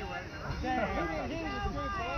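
Several people talking, with a laugh about a second in, over a low rumble of wind on the microphone.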